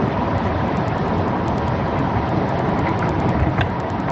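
Loud, steady rushing noise with a rapid, even ticking on top, coming through a video-call participant's open microphone.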